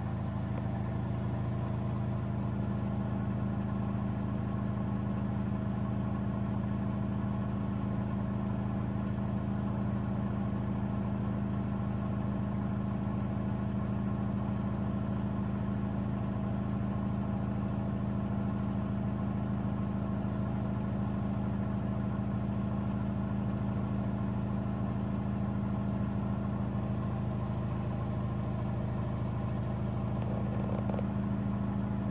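Miele Professional PW 6065 Vario washing machine in its final spin, the drum held at a steady reduced speed because the load is too unbalanced for full speed. The motor and drum give a steady hum with a few constant tones.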